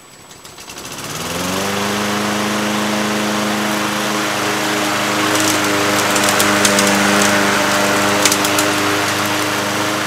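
Walk-behind push mower's small gasoline engine starting: it catches within the first second, rises quickly to speed and then runs steadily as the mower is pushed across the grass. A few sharp ticks come through partway along.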